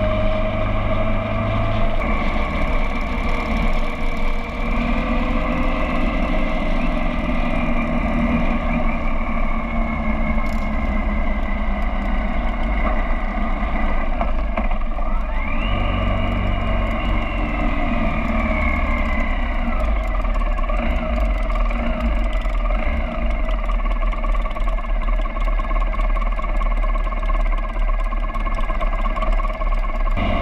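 Motorcycle engines running steadily while riding in a group, heard from a bike-mounted camera, with the engine pitch rising briefly about halfway through as the bike speeds up.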